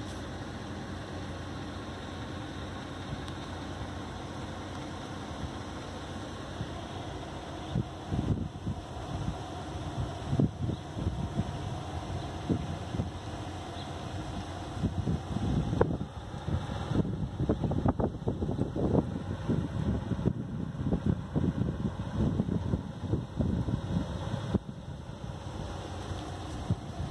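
Steady low outdoor rumble, with irregular gusts of wind buffeting the microphone from about eight seconds in.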